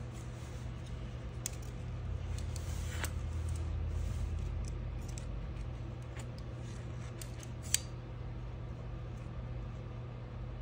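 Small hardware being handled off-camera: a few faint clicks and light handling noise, with one sharper click near the end, over a steady low hum.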